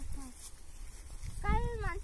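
A boy's voice: after about a second and a half of quiet background, a short drawn-out vocal sound near the end rises and falls in pitch as he starts to speak again.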